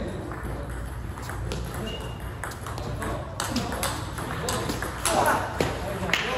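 Table tennis ball ticking off the bats and the table in a rally. There are a couple of single clicks at first, then quick exchanges from about halfway through, over background voices in a large hall.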